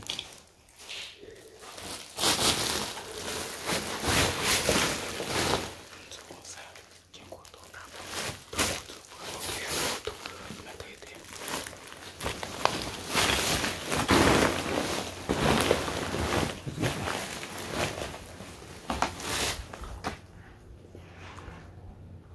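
Plastic sacks crinkling and rustling underfoot as someone walks over them, in irregular bursts.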